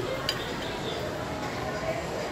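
Food-court background: a steady murmur of indistinct voices, with a light clink of tableware about a third of a second in.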